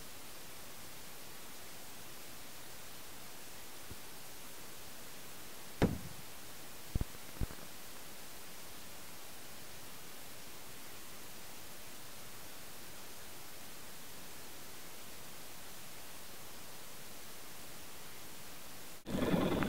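An Excalibur aerial shell, loaded upside down in a mortar tube, bursting inside the tube: one sharp bang about six seconds in, followed about a second later by two short pops, over a steady hiss. The shell blowing in the tube is the deliberate malfunction this rack is built to survive.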